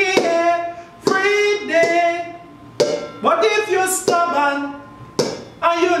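A man singing long, held melodic notes over a plucked-string accompaniment, with sharp plucked attacks at intervals.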